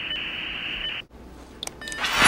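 Dial-up modem handshake: a steady telephone-line hiss that cuts off abruptly about a second in, followed by a few short faint beeps near the end.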